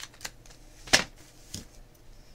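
Masking tape being handled and pressed onto a paper notebook page: a few light ticks and one sharp click about a second in, the loudest of them.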